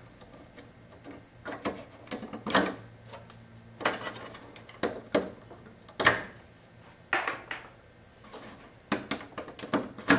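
Plastic ribbon-cable connectors being worked loose and pulled off a circuit board's header pins: a string of irregular clicks and scrapes, about one every second.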